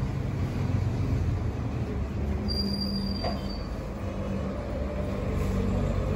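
A steady low rumble with a low hum that comes in about two seconds in, and a faint high tone for about a second around the middle.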